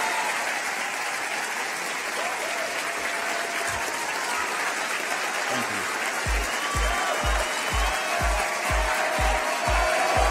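Audience applause after a speech, as an even clapping noise throughout. Music comes in partway, with a steady kick-drum beat of about two a second from about six seconds in.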